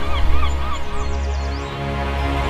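Background music with a steady bass drone, and over it a quick run of short honking bird calls, about four a second, that fade out within the first second.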